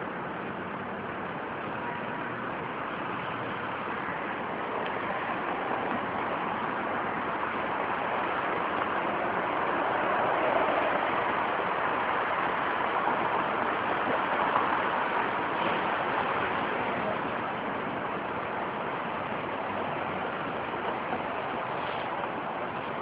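Steady rushing outdoor background noise with no voices. It swells gently about halfway through and then eases back.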